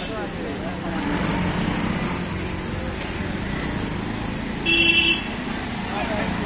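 Steady street traffic of passing cars and auto-rickshaws, with one short vehicle horn honk nearly five seconds in, the loudest sound.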